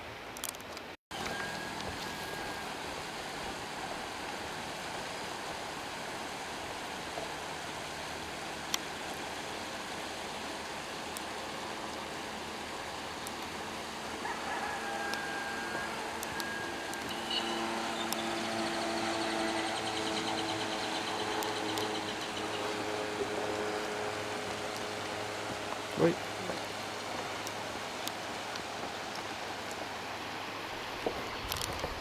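Steady rush of a shallow river running over stones. Faint voices come through in the middle, and there is a sharp knock near the end.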